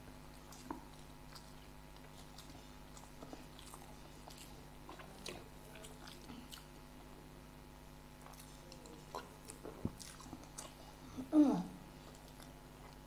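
People chewing fried samosas with their mouths close to the microphone: soft, scattered chewing clicks and smacks. A brief, louder sound that falls in pitch comes near the end.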